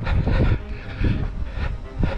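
Wind buffeting the microphone in uneven gusts, with a faint, steady distant whine underneath.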